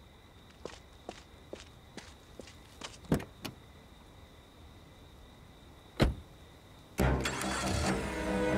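Footsteps on pavement, about five steps, followed by the clicks of a car door being opened and then a single heavy thump of an SUV door shutting about six seconds in. Music starts loudly a second before the end.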